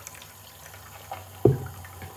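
Water trickling and dripping in a bathroom sink, with a few small clicks and one sharp thump about one and a half seconds in.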